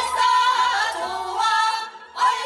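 Group of women singing a traditional Korean folk song together through microphones and a PA, unaccompanied, holding a long wavering note, then breaking off briefly near the end.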